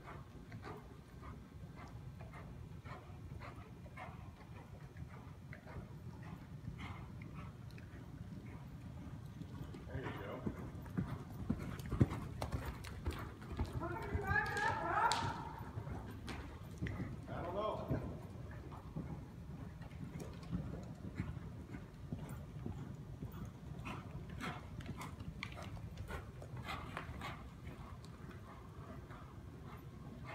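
Hoofbeats of a ridden horse going around an indoor arena on soft dirt footing, a run of repeated dull strikes.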